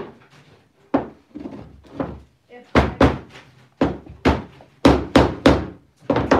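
Claw hammer driving a finish nail into a small wooden tray frame: about a dozen sharp taps, a few light ones spaced out at first, then quicker, harder strikes in the second half.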